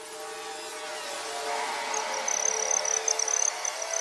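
A swelling electronic drone, growing steadily louder, with a steady low hum and a thin high whine that enters about halfway through. It is a build-up leading into the beat of a rap track.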